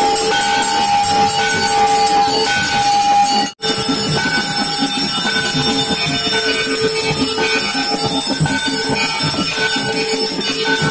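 Hindu temple aarti music with bells ringing, a steady run of pitched tones repeating about once a second. There is a split-second dropout about three and a half seconds in.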